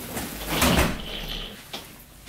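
Wheeled suitcase rolled across carpet and brought to a stop, with a rustling clatter about halfway through and a short click near the end.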